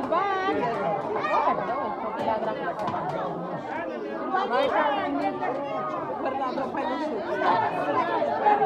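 Many people talking at once: a steady crowd chatter of overlapping voices with no single voice standing out.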